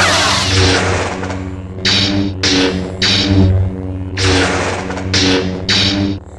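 Lightsaber sound effects in a duel: a steady electric hum broken by about seven sharp swing-and-clash hits, the loudest right at the start, over faint background music.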